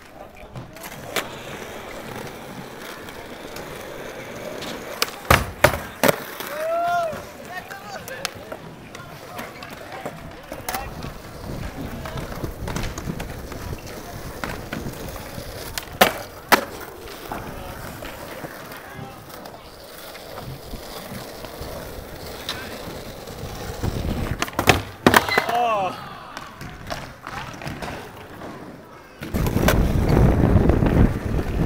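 Skateboard wheels rolling over a concrete skatepark, with sharp clacks of the board popping and landing: a pair about five seconds in, another pair around sixteen seconds as a skater slides a metal flat rail, and a cluster around twenty-five seconds. Short shouts from onlookers follow some of the tricks, and the rolling gets much louder close by at the very end.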